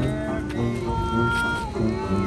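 Small acoustic street band playing live: a tuba stepping through a bass line under a melody of long held notes that slide in pitch, with banjo and light rhythmic ticks keeping time.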